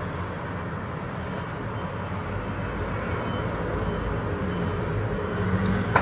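Steady background noise: a low hum with an even hiss, unchanging throughout and without distinct events.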